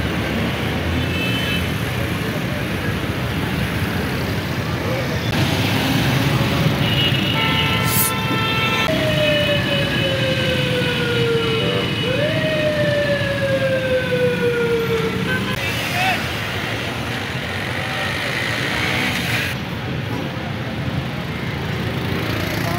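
Busy road traffic noise, with vehicle horns sounding around six to eight seconds in. Then a siren slides slowly down in pitch, jumps back up about twelve seconds in, and slides down again until it fades near fifteen seconds.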